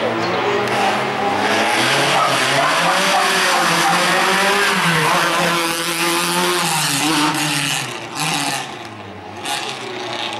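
Small hatchback race car's engine revving up and down as it takes a cone slalom, the pitch rising and falling with the throttle. It drops off sharply about eight seconds in.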